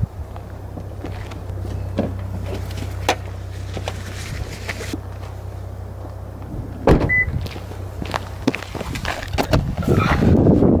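Rear door of an SUV opened and gear handled beside it, with scattered clicks and knocks over a steady low hum, then the door shut with a loud thump about seven seconds in, followed at once by a short high beep.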